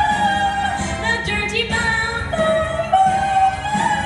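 A woman singing held, shifting notes into a microphone over recorded musical accompaniment, heard loud through a theatre sound system.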